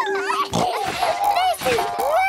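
Cartoon piglet and young rabbit voices giggling and squealing without words as they bounce on small trampolines.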